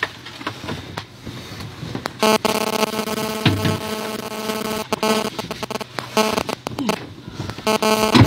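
A steady buzzing tone with many even overtones, starting about two seconds in and holding for about five seconds, broken briefly by a few clicks.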